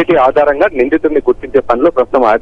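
Speech only: a reporter talking continuously in Telugu over a telephone line, the sound thin and narrow.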